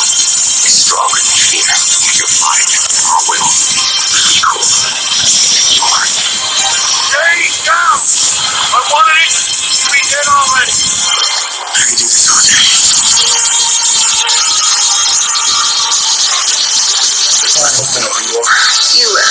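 Action-movie trailer soundtrack: loud music with sound effects and snatches of voices, a short drop in level a little past the middle before the full sound comes straight back.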